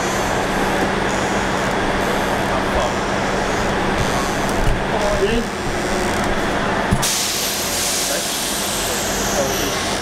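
Railway station platform noise: a diesel multiple-unit train running at the platform with a steady low hum, and a steady hiss that starts suddenly about seven seconds in, with faint voices in the background.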